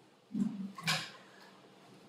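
A man's brief low vocal sound, then a short sharp breath about a second in.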